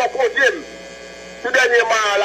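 A woman's high, strained voice crying out in two bursts, one at the start and another from about one and a half seconds in, with a quieter gap between. A steady electrical mains hum runs underneath.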